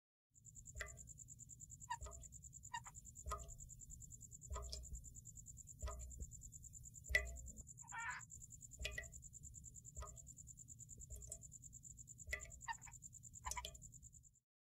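Faint chorus of frogs and insects: a steady high-pitched insect trill with short frog calls about once a second.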